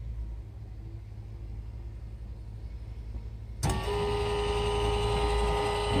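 A 14-inch electric linear actuator starts suddenly about three and a half seconds in and runs with a steady motor hum and whine, extending to raise a sliding chicken-coop door on a voice command. Before it starts there is only faint low background hum.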